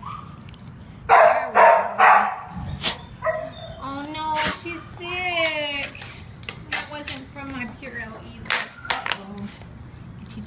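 Dog barking three times in quick succession, then high-pitched whining and yelping, with sharp clicks and knocks toward the end.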